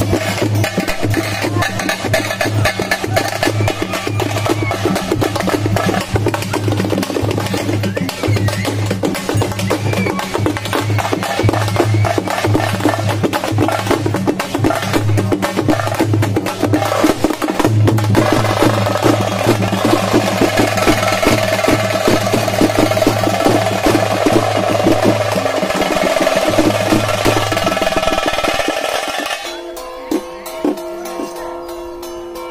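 Fast, dense drumming over a steady low drone. About two-thirds of the way in, a higher held tone joins, and the music drops away just before the end.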